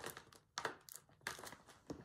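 Paper and a sheet of paper-backed iron-on fusible web being handled, giving a few short, faint crinkles and rustles.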